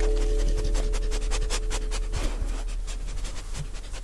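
A dog panting in quick, even breaths, a sound effect, while the last held chord of music fades out in the first second.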